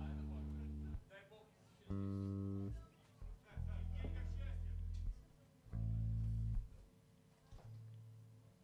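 Four low notes played one at a time on an amplified electric guitar, each held about a second, with short pauses between. A faint steady hum sits underneath from about halfway through.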